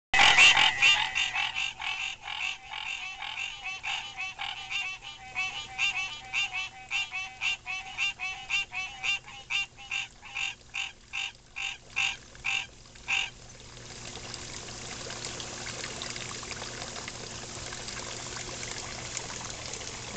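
Frogs croaking in a loud rhythmic chorus, about three calls a second, spacing out and then stopping suddenly about two-thirds of the way through. A steady trickle of pond water is left behind.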